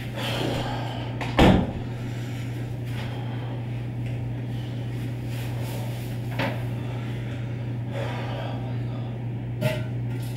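A sharp knock, like a door or cupboard shutting, about a second and a half in, then fainter knocks around six seconds and near the end, over a steady low hum.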